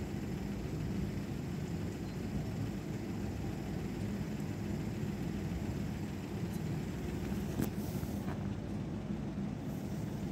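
Steady low rumble of road traffic, with a single short click about seven and a half seconds in.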